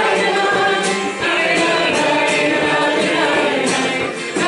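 Several voices singing a folk song together, with a few beats on a hand-held frame drum.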